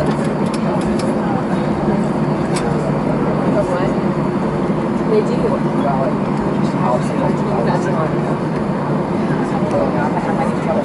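Jet airliner cabin noise while taxiing: a steady engine and airflow hum, with other passengers talking indistinctly.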